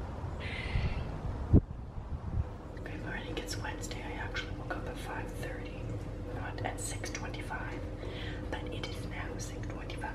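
A person whispering softly over a steady low hum, with a single thump about one and a half seconds in.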